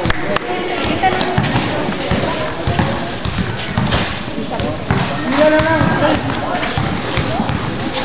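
Spectators' voices and shouts around a basketball court, with scattered sharp thuds of a basketball bouncing and of play on the court.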